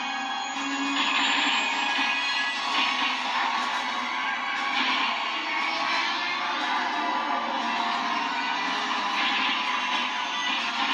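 Dramatic film score music playing from a television speaker, picked up off the set by a phone in the room.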